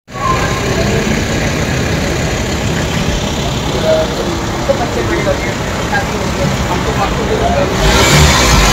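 Street ambience: steady traffic noise from passing cars, with scattered voices of people nearby.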